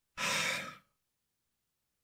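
A person sighing: one short, breathy exhale close to the microphone, fading out within about half a second.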